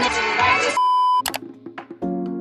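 Loud pop music with a heavy bass beat cuts out under a single short, steady, high electronic bleep, held about half a second. A few scattered soft clicks follow.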